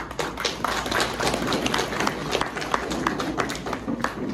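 Audience applauding: a dense patter of many hands clapping together.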